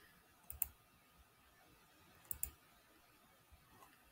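Computer mouse button clicking: two pairs of sharp clicks about two seconds apart, with a fainter click near the end.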